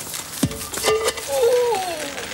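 A thud about half a second in as a slab drops onto a man's foot, then his long, wavering cry of pain that falls away near the end.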